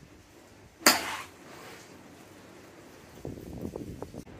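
A golf wedge strikes a ball off a range mat in a chip shot: one sharp click about a second in, with a brief ringing tail. Soft scuffing sounds follow near the end.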